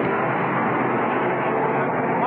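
Steady, dense din of NASCAR stock-car V8 engines running, heard from pit road.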